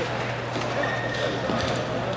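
Table tennis balls clicking on tables and bats in a busy hall, a few scattered clicks over background chatter.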